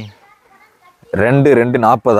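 A man's voice speaking, with a pause of about a second near the start.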